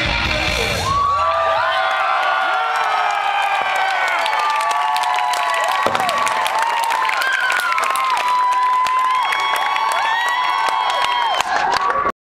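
A live electro-punk band's song ends about a second in, and a club crowd cheers, whoops and claps.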